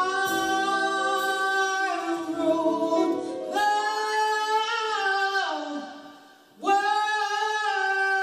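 Live band with a singer holding long sustained notes in a slow ballad's closing passage. The sound fades almost away about six seconds in, then a loud full held chord comes in.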